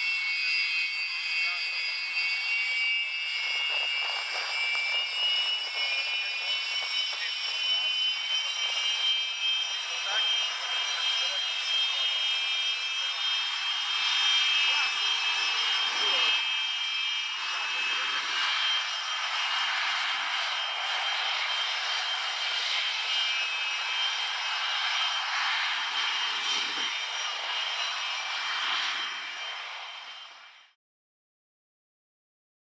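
Twin Saturn/Lyulka AL-31F turbofans of a Sukhoi Su-27UB taxiing: a steady rushing jet noise with a high, multi-toned turbine whine on top. The sound fades out at the very end.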